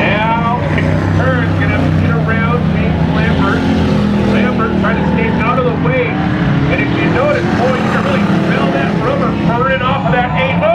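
A steady, low engine drone with a man's voice talking over it; the words cannot be made out.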